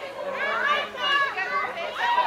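Indistinct chatter of several young voices talking over one another, with no clear words.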